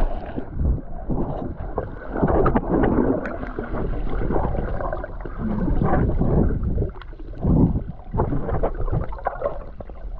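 Muffled sloshing and gurgling of seawater around an action camera held underwater, in uneven swells every second or so.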